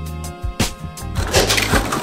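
Background music under a few sharp clicks and scrapes of a utility knife slicing through packing tape on a corrugated cardboard box, followed by a rough scraping rustle of cardboard flaps being pulled open.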